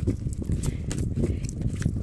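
A deck of oracle cards being shuffled by hand, the cards sliding and slapping against each other in soft, irregular clicks.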